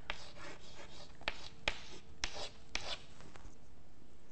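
Chalk writing on a blackboard: a quick run of short scratchy strokes as letters and underlines are drawn, stopping about three seconds in.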